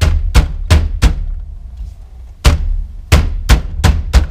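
Palms pounding on the rim of a Honda Civic steering wheel, a series of sharp thumps: four about three a second, a pause of over a second, then four more. The wheel is being knocked loose from the steering column, with its centre nut backed out but left on.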